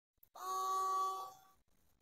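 A 12 V automatic bilge pump's motor spinning dry for about a second the moment the battery is connected, a steady whine that rises in and dies away.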